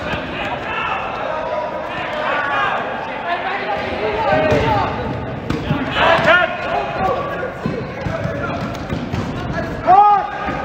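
Dodgeballs bouncing and smacking on a hard gym floor and walls during live play, amid players' shouts in a large gymnasium.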